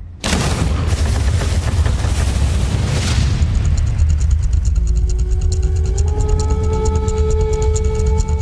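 A sudden loud, deep boom that rumbles on. Trailer music builds under it, first with a fast, even pulse and then with held notes that step up slightly in pitch.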